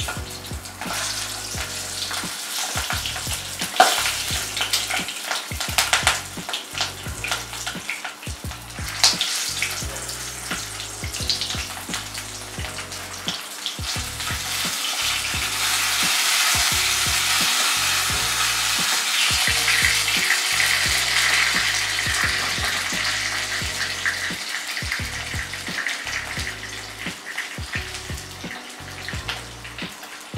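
Stuffed capsicums sizzling in hot oil in a non-stick wok as they are laid in one by one. The sizzle swells through the middle and eases near the end, with a few sharp knocks along the way.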